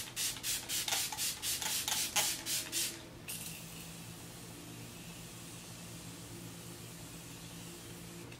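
Finger-pump spray bottle of Smashbox Primer Water misting in quick short squirts, about four a second, for the first three seconds. Then the Morphe Continuous Setting Spray gives one long, steady hiss of continuous mist, with no pumping.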